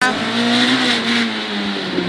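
Renault Clio Williams rally car's four-cylinder engine heard from inside the cabin, running hard under load with road and tyre noise. Its note holds fairly steady and eases slightly after about halfway.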